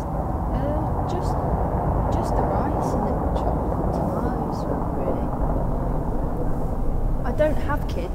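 Steady background murmur of indistinct voices and room noise, with no clear words, and a short stretch of clearer voice near the end.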